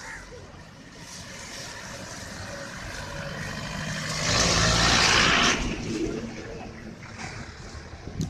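A city bus driving past close by: its engine and tyre noise build steadily to a loud peak about halfway through, then fade as it moves away.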